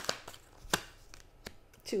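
A deck of tarot cards being shuffled by hand: a quick run of light card clicks that thins out, with one sharper snap under a second in and a few scattered clicks after it.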